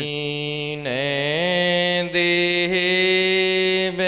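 Devotional folk invocation (sumirni): a male voice sings long drawn-out notes that slide in pitch, over a steady sustained drone.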